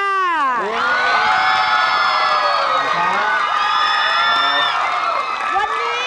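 Studio audience cheering, with many high voices shouting at once. It eases off near the end.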